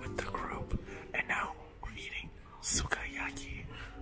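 A person whispering close to the microphone, with faint background music.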